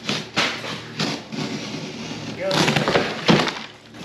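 Heavy corrugated cardboard shipping box being torn open by hand, ripping in two spells, the second one, past the middle, louder.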